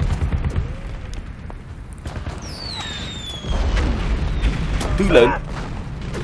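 Battle-scene artillery sound effects: a low boom and rumble of a field gun firing at the start, then a falling whistle about two and a half seconds in, followed by a long low explosion rumble. A man shouts once near the end.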